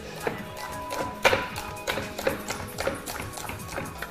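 A knife chopping asparagus on a wooden chopping board: a run of irregular taps, over soft background music.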